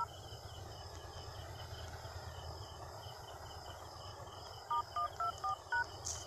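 Phone dialer keypad touch tones (DTMF): one short beep at the start, then, after a few seconds of faint background hiss, five quick beeps near the end as the balance-check code *124# is keyed in.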